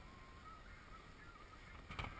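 Near silence: faint outdoor ambience with a few faint, short chirping calls and a click just before the end.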